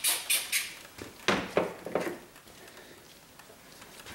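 Foam-trigger spray bottle of soapy water being pumped rapidly, about four short spritzes a second, stopping within the first second. A couple of sharp knocks follow, then the sound falls quiet.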